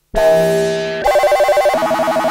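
Korg MS-20 analogue synthesizer: a held tone rich in overtones sounds just after a brief gap. About a second in, it breaks into a fast warbling trill between two pitches, about a dozen pulses a second, like a ringtone.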